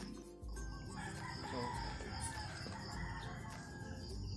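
A rooster crowing once, one long wavering call starting about a second in.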